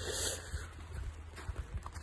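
Footsteps in snow with a few soft knocks, over a low steady rumble on a handheld microphone.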